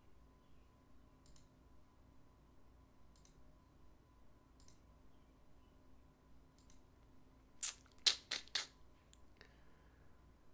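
Quiet room tone with a faint steady hum and a few faint ticks, then a quick run of four short clicks within about a second, roughly three-quarters of the way in.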